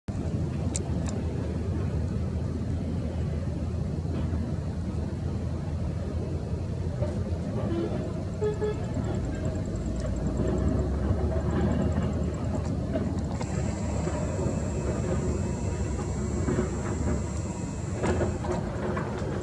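A steady low rumble with faint voices. A thin high whine joins about thirteen seconds in.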